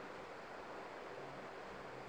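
Steady, faint hiss of background noise with nothing else distinct: room tone between spoken phrases.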